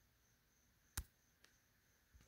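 Near silence: quiet room tone, broken by one short sharp click about halfway through and a faint tick just after.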